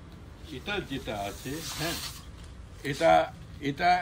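Low talking voices, with a brief hissing rustle of saree cloth being spread out about halfway through.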